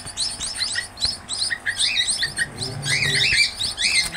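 A group of young munias (emprit) chirping: many short, high chirps repeated rapidly and overlapping one another, with a few louder arching chirps near the end.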